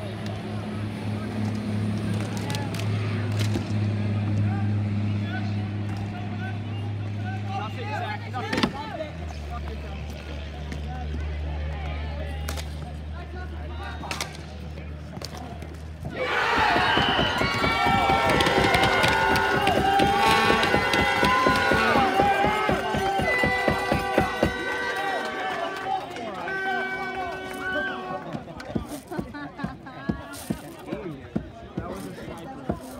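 A steady low hum that drops in pitch about a third of the way in. About halfway through it gives way to a mix of people's voices and many sharp clicks and taps.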